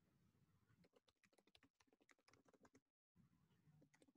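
Near silence, with faint scattered clicks of typing on a computer keyboard heard over a video call.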